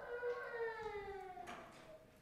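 A man's mock grumbling: one drawn-out, whining groan that slides slowly down in pitch and fades out about a second and a half in.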